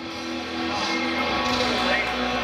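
Amplified electric guitar holding sustained notes, with a low bass drone joining a little over a second in and the sound building in loudness as the band starts a rock song.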